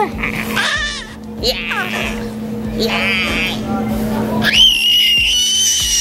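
Nine-month-old baby squealing: a few short, wavering high-pitched squeals, then one long high squeal of about two seconds near the end. A steady low hum runs underneath.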